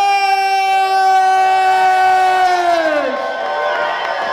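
Ring announcer's voice over the PA holding one long shouted vowel at a steady pitch, falling away about three seconds in, then the crowd cheering.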